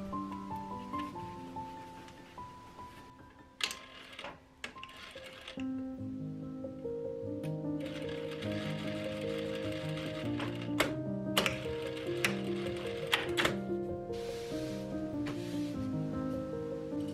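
Piano music, with a Juki industrial lockstitch sewing machine running under it in a few short runs of stitching, and several sharp clicks.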